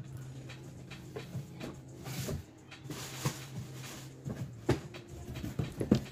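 Handling noises as a cardboard shipping box is fetched and handled: scattered knocks and clicks, with two short scraping rustles about two and three seconds in and a sharper knock near the end, over a steady low hum.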